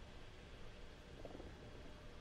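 Very faint room tone with a low rumble.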